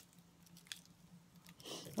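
A few faint, scattered ticks of dry seasoning shaken from a spice jar onto raw broccoli and onion.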